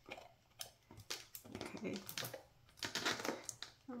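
Hands handling an upcycled plastic-bottle lantern covered in silver paper-plate cutouts and stick-on jewels, making a series of light, irregular clicks and taps as its top is seated back in place. A single spoken 'okay' comes in the middle.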